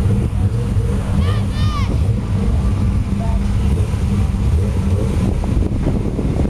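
Sports car engine idling steadily, with wind buffeting the microphone. A person's voice calls out briefly about a second in.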